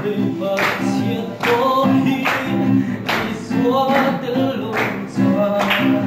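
Voices singing a song to an acoustic guitar strummed in a steady rhythm, about one strum stroke every three-quarters of a second.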